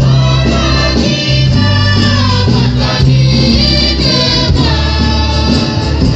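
Torres Strait Islander choir singing a hymn in several voices at once, with acoustic guitar, over a stage PA.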